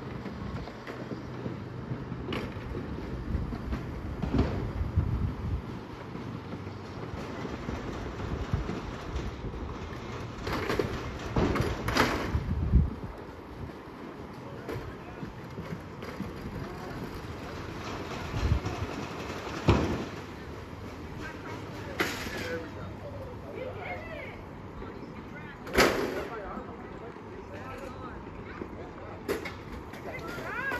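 Chairlift ride heard from the chair: a steady low rumble with several sharp knocks and clunks at irregular intervals, and faint voices in the background.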